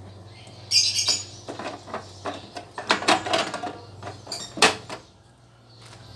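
Short plastic clicks and knocks of an ink cartridge being handled and pushed into place in a Canon inkjet printer's carriage, with a brief rustle about a second in and the sharpest click a little after four and a half seconds.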